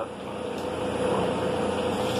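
Walk-in cooler's refrigeration unit running: a steady whooshing hum with one steady tone through it, slightly louder from about a second in.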